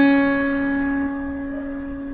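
A single note plucked on an acoustic guitar capoed at the second fret, ringing out and slowly fading.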